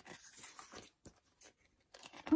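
Faint paper rustle of a glossy photo book's page being turned by hand, followed by a couple of soft ticks.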